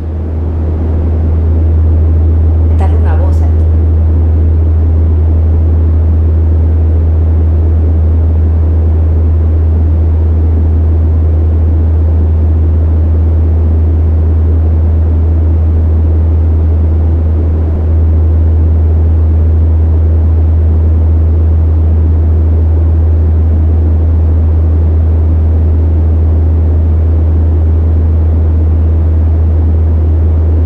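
Electromagnetic-field amplifier sonifying a khipu antenna of copper thread and alpaca wool: a loud, steady deep hum with a grainy noise over it, dipping briefly about eighteen seconds in.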